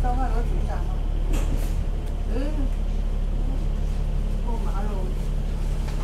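Double-decker bus's diesel engine idling steadily while the bus stands in traffic, heard from inside on the upper deck. A brief hiss comes about one and a half seconds in, and passengers' voices are faint over the hum.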